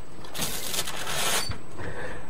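Steam wand of a red two-group Gaggia espresso machine hissing in a burst of about a second.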